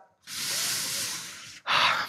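A man's long audible breath, hissing close into a headset microphone for about a second and fading. Near the end comes a short, breathy "ha".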